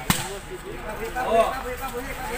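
A single sharp smack of a basketball striking a hard surface about a tenth of a second in, followed by players and onlookers talking and calling out.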